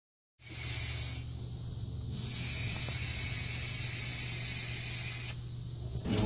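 A SMOK S-Priv vape with a Baby Beast tank being puffed: a steady hiss of air drawn through the firing coil and tank. The hiss starts just under half a second in, drops back for about a second, then runs on and stops shortly before the end.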